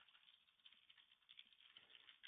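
Near silence with faint, irregular computer keyboard clicks from typing.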